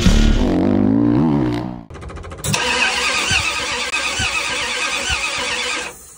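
Intro music fading out, then a loud engine running steadily for a few seconds before it cuts off abruptly.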